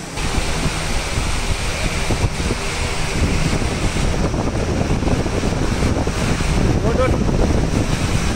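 Loud, steady rumbling noise on the microphone, with faint voices in the background and a brief call about seven seconds in.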